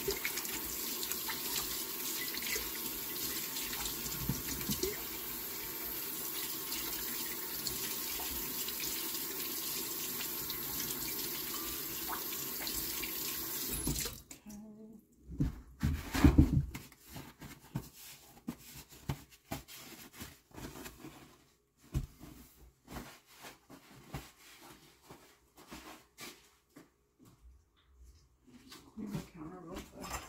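Kitchen sink tap running steadily for about fourteen seconds, then shut off suddenly. Scattered knocks and clatter of handling at the counter follow, loudest a couple of seconds after the water stops.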